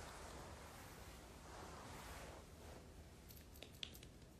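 Near silence: faint room tone with a soft hiss that swells twice, and a few small clicks near the end.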